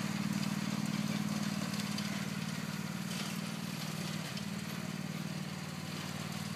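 Riding lawn mower's small engine running steadily as the mower drives across the field, growing slightly quieter as it moves away.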